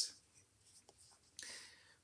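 Quiet room tone with a couple of faint ticks about a second in, then a short soft rustle in the second half.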